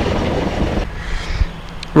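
Sailboat's inboard engine running with wind buffeting the microphone, while the boat sits aground on the mud; the sound drops off abruptly a little under a second in, leaving a quieter steady hum.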